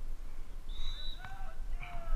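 Faint, distant voices calling out over a low rumble.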